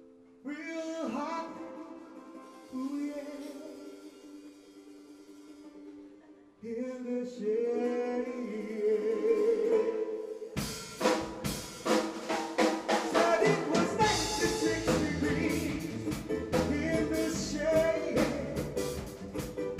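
Live band music at the start of a song: long held sung notes for about ten seconds, then the drum kit comes in with a steady beat, and the bass guitar joins a few seconds later.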